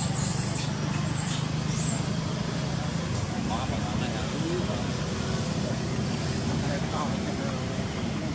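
Steady low hum like a distant engine over outdoor background noise, with a few faint high chirps in the first two seconds.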